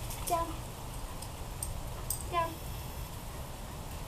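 Speech: a woman twice gives a dog the command "down", about two seconds apart, over a low steady rumble.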